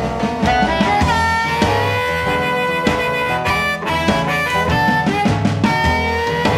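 Blues band recording with a harmonica playing long held notes that bend, over bass and drums.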